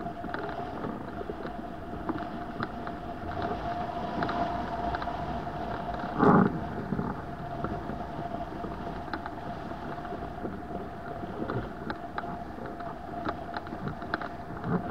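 Wind rushing over a hang glider in flight and buffeting the microphone in choppy air, with a steady tone underneath and one louder thump about six seconds in.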